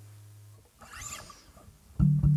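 A low sustained note from the acoustic guitar fades out, then a brief, faint scratchy noise about a second in, just before the playing starts again.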